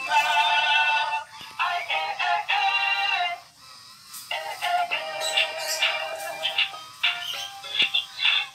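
Dancing cactus plush toy playing a song through its small built-in speaker: high, thin singing over music with little bass. The song dips briefly about halfway through, then carries on.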